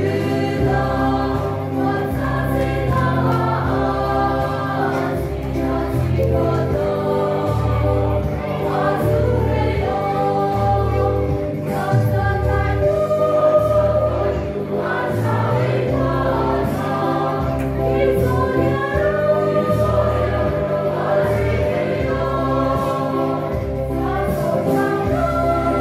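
Mixed church choir of women and men singing a hymn together, voices blended in a steady, continuous line of song.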